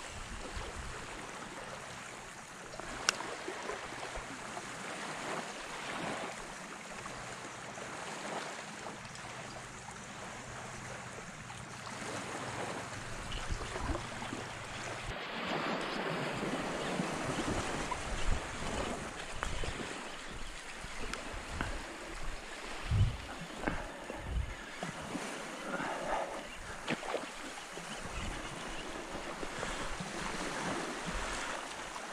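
Wind on the microphone over a shallow creek's running water, a steady rush that grows a little louder about halfway through, with scattered low thumps in the second half.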